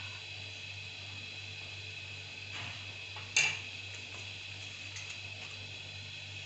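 Steady low background hum with one sharp clink a little past the middle, and a softer knock shortly before it.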